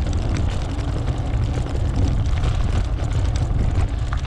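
Wind buffeting the camera's microphone while riding, a steady low rumble that flutters with the gusts.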